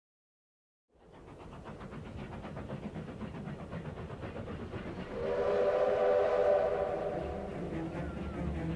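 Steam locomotive running with a steady rhythmic clatter, fading in about a second in. About five seconds in, its steam whistle blows a chord of several tones for about two seconds, the loudest sound here.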